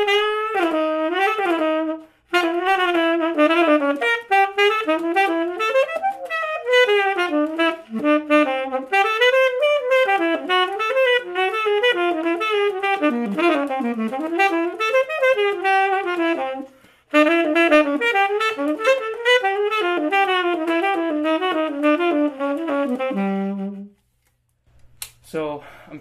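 Solo jazz saxophone with no accompaniment, improvising over a blues in fast runs of notes and working a transcribed lick into the chorus. There are short breaks about two and seventeen seconds in, and it ends on a held low note shortly before the end.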